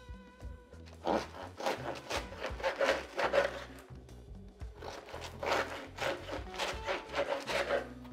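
A serrated bread knife sawing through the crust of a sourdough olive loaf on a wooden board, in quick back-and-forth strokes, about three a second, with a short pause around the middle. Background music plays underneath.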